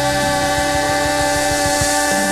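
Country band music between sung lines: a held chord sustained over a steady low beat.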